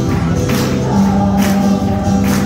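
A group singing a worship song over amplified backing music, with long held notes and a crisp percussive hit about once a second.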